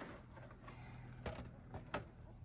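Thin black plastic seed tray being handled over a plastic tote, giving a few light clicks, the sharpest one near the end, over a faint steady low hum.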